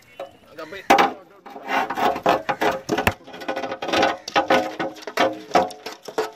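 Irregular knocks and clatter as a rope-bound crab ring net holding a mud crab is handled and lowered into a metal basin, with a sharp knock about a second in.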